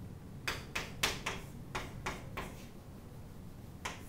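Chalk strokes on a blackboard: about eight short, sharp taps and scrapes at an irregular pace, bunched in the first two and a half seconds, with one more near the end.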